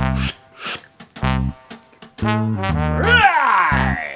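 Comic brass music sting: a few short low notes, then a longer held note, then a sliding downward glissando like a trombone slide near the end.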